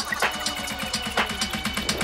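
House/techno DJ mix playing: sustained synth tones with a light percussive hit about every half second and no kick drum.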